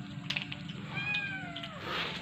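A kitten meows once about a second in, a drawn-out call that falls in pitch at the end, over a steady low hum.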